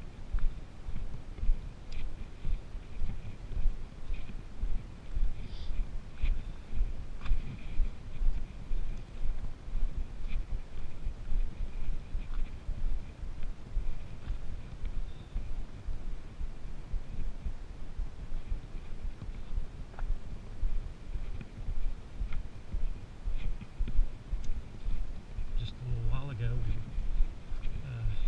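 Footsteps and the jostle of a handheld camera while hiking down a dirt forest trail with trekking poles, a rhythmic low thudding about two steps a second, with a few sharp clicks along the way. A faint steady high tone runs underneath.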